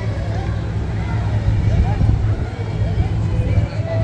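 Passers-by talking, their voices heard over a steady low rumble.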